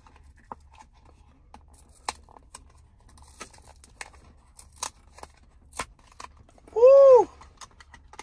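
Cardboard and plastic packaging of a new charger adapter being pried open by hand, with a string of small clicks, snaps and crinkles. About seven seconds in there is a short, loud, high-pitched squeal that rises and then falls.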